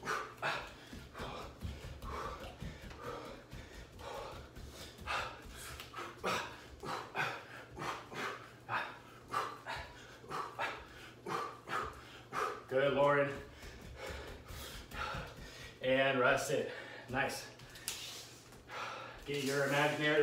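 A man breathing hard while shadowboxing: quick, sharp exhales, several a second, with his punches. Past the middle he lets out a few short voiced gasps or grunts.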